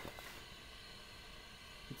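Faint steady hiss of a gas fireplace's flames burning over fake logs, with a small click at the start.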